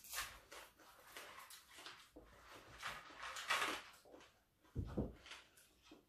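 Crispy deep-fried pork skin crackling and crunching as it is broken off a fried pig's head by hand and chewed, in a string of crackles that is densest about three and a half seconds in. A dull thump comes about five seconds in.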